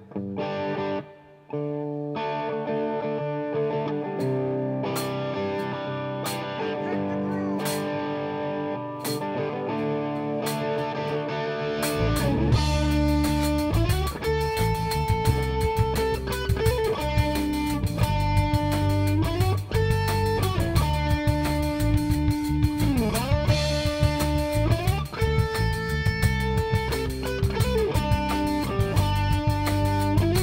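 Live band playing the instrumental opening of a country-rock song: a guitar plays alone at first, then about twelve seconds in the bass and drums come in with the full band, carrying a lead line of held notes that bend in pitch.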